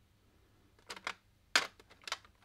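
Hard plastic art supplies clicking and knocking together as they are rummaged through on a shelf: a small cluster of clicks about a second in, then a louder click and another near the end.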